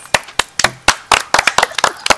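A few people clapping their hands, quick uneven claps that overlap.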